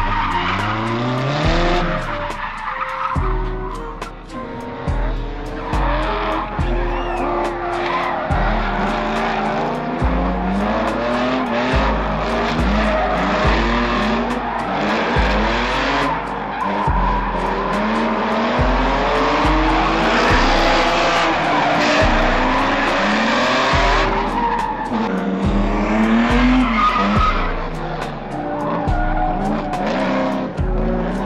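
Drift car engines revving up and down repeatedly with tire squeal, mixed with music that has a heavy bass line and a beat.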